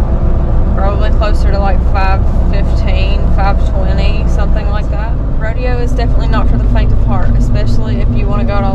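A woman's voice talking over the steady low rumble of a vehicle on the road, heard from inside the cabin.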